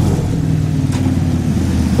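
A car engine running steadily close by, a low, even hum, with a faint click about a second in.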